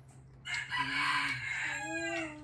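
A rooster crowing once, a long harsh call that starts about half a second in and trails off at the end.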